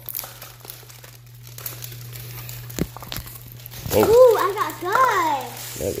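Plastic toy wrapping crinkling as it is handled and pulled open, with a couple of sharp light clicks near the middle. About four seconds in, a child's high voice slides up and down in a short exclamation, louder than the rustling.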